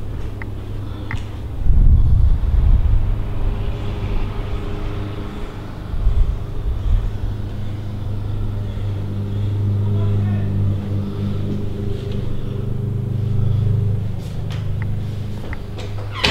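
Wind buffeting the microphone, with heavy gusts of rumble about two seconds in and again around six seconds, over a steady low hum.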